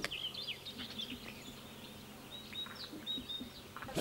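Faint small-bird chirps: a scatter of short, high calls, with a few brief whistled notes in the second half.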